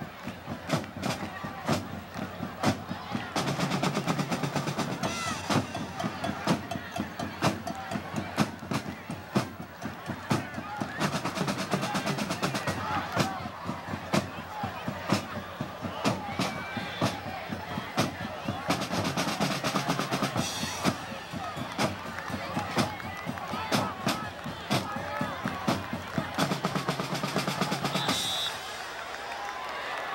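Marching band drums playing a cadence: a fast, steady run of snare and drum strokes, with deeper, heavier bass-drum passages three times.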